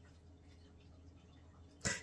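Near silence: quiet room tone with a faint low hum, broken near the end by one quick intake of breath.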